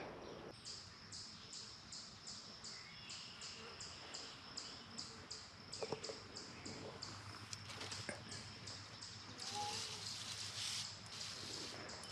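Faint, rhythmic high-pitched chirping, about three chirps a second. Near the end a soft hiss joins in from a hand sprayer's wand spraying at the base of a young bur oak.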